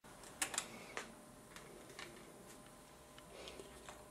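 A few faint clicks and light taps over quiet room tone, the loudest in the first second: handling noise as the schematic printout and probe are moved.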